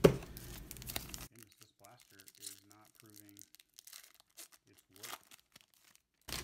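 A baseball card pack's wrapper torn open with a sharp rip, then about a second of crinkling. Faint clicks of the cards being handled follow.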